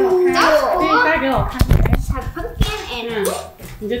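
Children's voices, with a short cluster of knocks and handling noise about a second and a half in.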